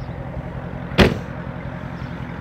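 The trunk lid of a 2015 Dodge Challenger slammed shut once, about a second in, over a steady low engine hum.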